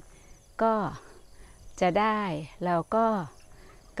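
A woman speaking in three short phrases, with insects trilling faintly and steadily in the background.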